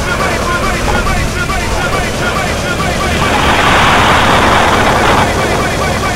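Banger racing cars' engines running as a steady low rumble, with voices close by. About three seconds in, a louder burst of rushing noise rises over it for about two seconds, then drops away.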